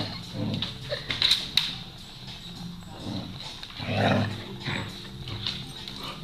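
Two small dogs play-fighting, with low growls near the start and loudest about four seconds in, and scuffling and a few sharp clicks in between.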